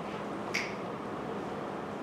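A single short, sharp click about half a second in, over a steady background of room noise.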